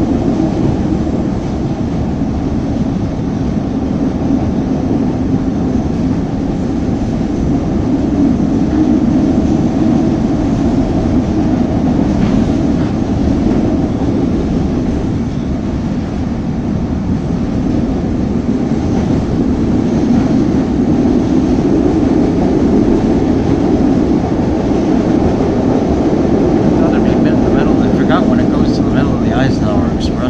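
Steady ride noise of a CTA Blue Line rapid-transit train running at speed, heard inside the car: a continuous low rumble from the wheels on the rails and the running gear, swelling and easing a little.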